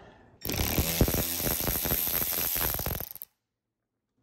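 Ratchet driving a T25 Torx bit, clicking rapidly as it backs out a radiator bracket bolt. The clicking starts just under half a second in and stops abruptly about three seconds in.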